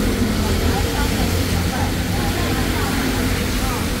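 Restaurant room noise: a steady low rumble and hiss, with faint voices in the background.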